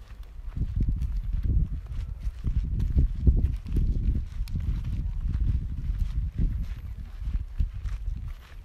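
Uneven, gusting wind rumble buffeting the microphone, with footsteps on dry, scrubby ground underneath.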